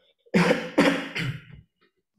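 A person coughing three times in quick succession, the first two loud and the third weaker.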